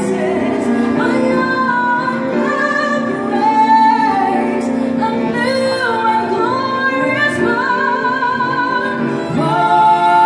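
Female voice singing a Christmas carol live through a microphone, with long held, gliding notes. A second female voice joins about nine seconds in, and the two sing together more loudly.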